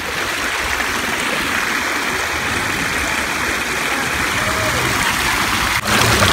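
Shallow creek water rushing over limestone rocks in a steady, even rush.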